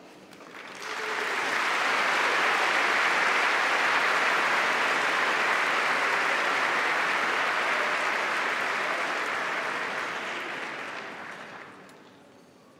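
Large banquet audience applauding: the clapping builds about a second in, holds steady, then dies away near the end.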